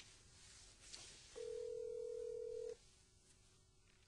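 A telephone ringing: one steady electronic ring starts about a second and a half in and lasts just over a second, with a few faint clicks around it.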